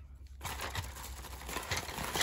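Wooden colouring pencils clicking lightly against each other as they are handled, with a soft crinkling of plastic bubble wrap. The small ticks start about half a second in.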